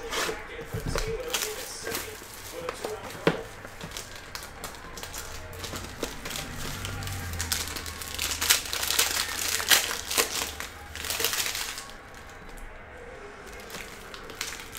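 Plastic shrink-wrap crinkling and tearing as a sealed trading-card box is unwrapped, then the foil pack inside crinkling as it is opened. Irregular crinkles and sharp clicks throughout, busiest in the second half.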